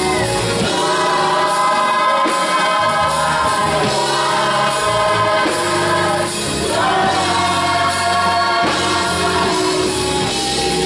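Gospel choir singing sustained harmonies with a band underneath, with a brief dip about six seconds in before the next chord.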